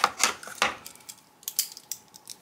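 A clear acrylic quilting ruler and pen being lifted off and set down on a cutting mat: a handful of light clacks and taps, most of them in the first second.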